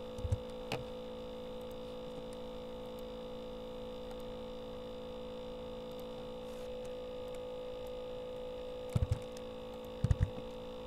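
Steady electrical hum, several fixed tones with the strongest a mid-pitched drone. A few short, soft low thumps break through near the start and again about nine seconds in.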